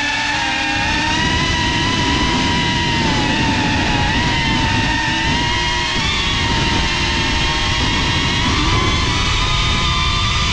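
FPV quadcopter's brushless motors and propellers whining steadily, the pitch wavering a little with the throttle, over heavy wind and prop-wash rumble on the onboard camera's microphone.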